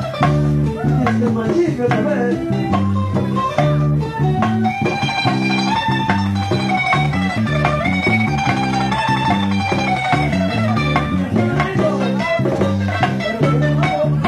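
Bachata band playing live: a picked lead guitar melody over a stepping bass line and steady percussion strokes.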